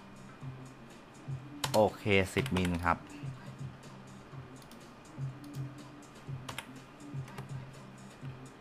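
Scattered light clicks of a computer keyboard and mouse, one at a time with gaps between them.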